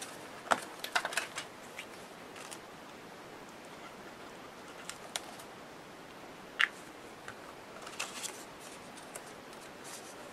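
Small craft scissors snipping paper, a quick run of sharp clicks in the first second or so. These are followed by a few scattered light clicks and taps as craft supplies are handled on the table.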